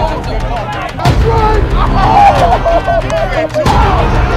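Trailer sound effects: two heavy booming hits, one about a second in and one near the end, over a steady low rumble and voices without clear words.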